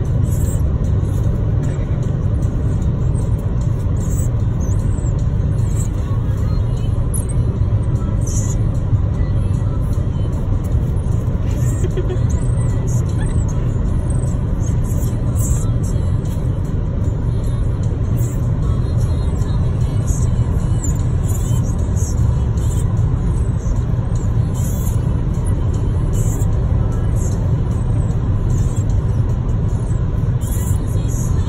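Steady road rumble inside a moving car's cabin, with music playing under it and short, very high chirps scattered throughout.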